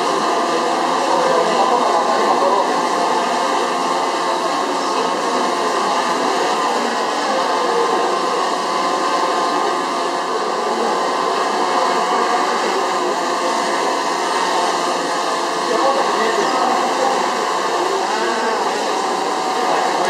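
DJI Phantom 3 Professional quadcopter hovering, its propellers giving a steady hum, mixed with the chatter of a crowd.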